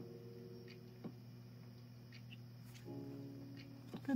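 Faint background music with soft held notes, and a light tap or two of tarot cards being handled, the last as a card is drawn at the very end.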